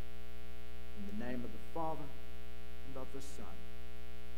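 Steady electrical hum from the sound system or recording chain, one even tone with many overtones, with a few soft spoken syllables about a second in and again around three seconds in.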